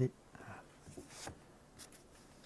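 The last word of a man's sentence, then faint, soft rustling of paper as loose sheets and a booklet are handled.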